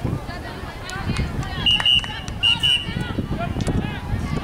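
Referee's whistle blown as two quick double blasts, a steady shrill tone, about halfway through, stopping play. Sideline spectators are talking around it.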